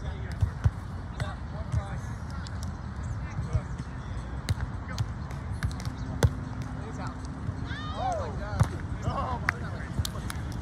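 Volleyball being struck during a rally on a sand court: scattered sharp slaps of hands and arms on the ball, the loudest about six seconds in, over a steady outdoor background of distant voices.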